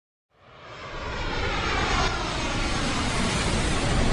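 Jet aircraft flying over: a rushing engine noise that fades in from silence and swells, with a tone gliding downward as it passes.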